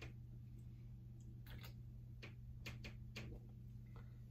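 A person drinking from an aluminium can: faint scattered clicks of swallowing and lip sounds over a steady low hum.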